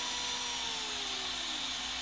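Racerstar 3650 brushless RC motor spinning down as the throttle is eased off, its whine falling steadily in pitch over about a second and a half, over the steady hiss of the ESC's cooling fan.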